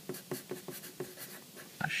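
Pencil writing block capital letters on paper, a run of short scratching strokes one after another.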